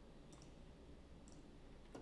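Near silence with two faint computer-mouse clicks, about a third of a second in and just past the middle.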